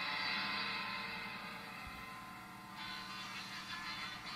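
Live jazz-rock band playing an instrumental passage of sustained chords over a steady wash, fading slightly, with a change in texture near the end.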